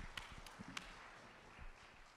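Applause dying away, with a few last claps at about four a second in the first second, then a fading hush.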